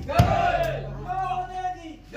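A group of men shouting together in long held calls, twice, like a chanted cheer. A sharp thump comes just after the start.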